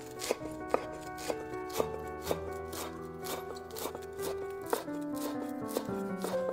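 Chef's knife chopping fresh parsley on a wooden cutting board: repeated sharp cuts, about two to three a second, over background music.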